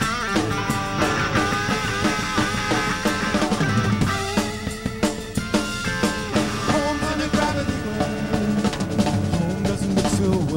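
Rock band playing live, with drum kit, electric bass and electric guitar, the drums hitting at a steady beat.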